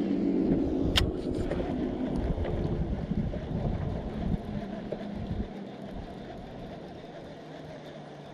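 A boat motor's steady hum, fading away over the first three seconds, under a low uneven rumble of wind on the microphone. A single sharp click about a second in.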